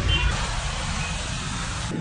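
Outdoor street noise: a steady low rumble of road traffic, with a short high beep near the start.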